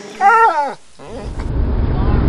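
A dog's single short whine of about half a second, rising slightly and then falling in pitch. About a second in, a steady low rumble of a car's cabin at road speed takes over.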